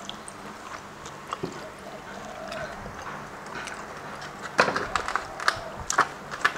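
A person eating at a table: quiet chewing and biting, then from about four and a half seconds in a run of sharp clicks and knocks from handling food and tableware, the loudest sounds here.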